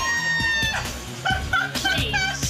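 A woman's long, high-pitched shriek of excitement lasting about a second, then shorter high cries, over background music.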